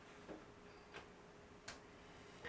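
Near silence: room tone, with three faint short clicks evenly spaced about two-thirds of a second apart.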